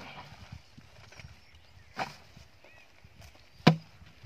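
Two sharp knocks from the pots and plastic containers of fermented country-liquor wash being handled and tipped out: a small one about two seconds in and a louder one near the end. A faint bird call is heard under them.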